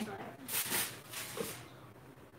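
Powdered sugar poured from a measuring cup into a steel stand-mixer bowl: two short, soft hissing rustles with a brief vocal sound between them.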